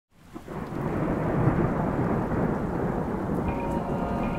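Heavy rain with a low rumble of thunder, fading in at the start and swelling about a second and a half in. Bell-like chime tones enter near the end.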